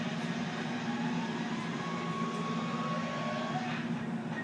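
A steady low mechanical hum, even throughout, with a faint thin high tone in the middle.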